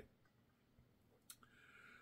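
Near silence: room tone, with one short, quiet click about a second and a half in and a faint breath-like noise just before the end.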